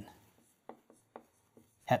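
Felt-tip marker writing on a whiteboard: about four short, faint taps of the tip against the board as letters are drawn.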